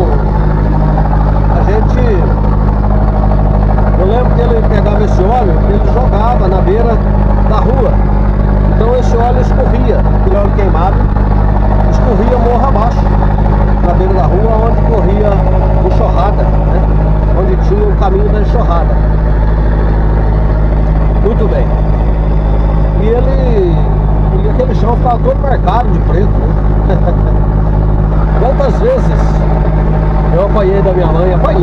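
A moving road vehicle's engine and road noise make a steady low drone that holds level throughout.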